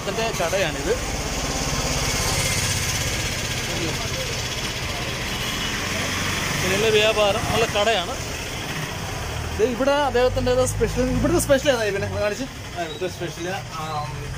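A motor vehicle's engine running close by, loudest a couple of seconds in and fading over the next few seconds. Then people talk.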